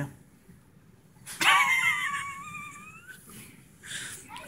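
A woman's high-pitched mock whimper, like a sad dog's whine, lasting about two seconds; it dips and then rises in pitch toward the end.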